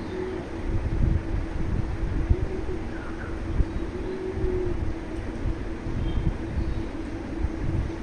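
Ground onion-ginger-garlic-chilli-tomato paste and chopped tomato frying in mustard oil in a karai, a low, even sizzle and crackle.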